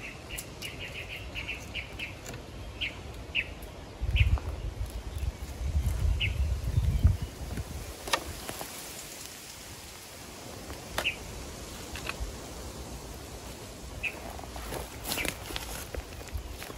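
A small bird chirping in short high notes, a quick run at the start and then single chirps here and there. Dry, burnt bamboo and leaf litter crackle and snap as it is handled, and a low rumble on the microphone runs from about four to seven seconds in.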